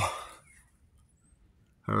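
A voice trailing off at the end of a phrase, then a pause of near silence before speech resumes at the very end.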